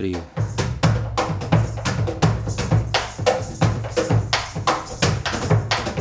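Argentine folk percussion: a bombo legüero struck with a stick, together with hand slaps on a wooden cajón, in a steady rhythm of sharp strikes, about four a second.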